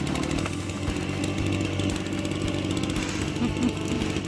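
Petrol brush cutter engine running steadily.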